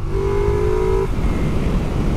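Ducati Multistrada V4S's V4 engine pulling as the bike gains speed, its note rising slightly for about a second and then sinking under wind rush and rumble.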